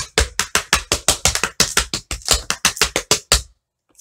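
Tap shoes' metal taps striking a wooden tap board in running shuffles (step, brush forward, brush back, over and over), a quick even run of sharp clicks that stops about three and a half seconds in.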